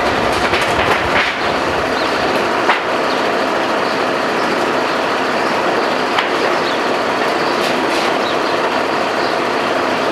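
Aerial ladder fire truck's engine running steadily to power the ladder, with a couple of brief knocks about a third and about two thirds of the way through.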